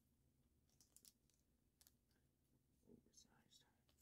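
Near silence, with a few faint clicks and light rustles of a trading card being handled in the fingers.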